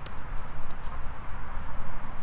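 A few light clicks from handling a Grayl GeoPress water purifier bottle, over a steady, uneven rumble of wind on the microphone.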